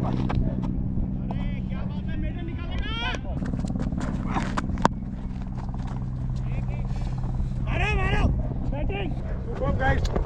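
Cricket players calling and shouting across the field during a delivery, over a steady low hum. A single sharp crack sounds about five seconds in.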